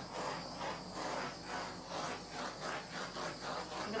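Small handheld torch flame hissing as it is swept back and forth over wet acrylic paint, swelling and fading about twice a second. This is the torching step of an acrylic pour, done to pop air bubbles in the freshly poured paint.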